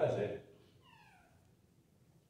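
A man's voice briefly at the start, then about a second in a short, high-pitched cry that falls in pitch, like a meow.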